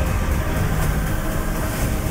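Movie-trailer sound effects played back: a loud, steady, dense rumble like a speeding vehicle, heavy in the low end.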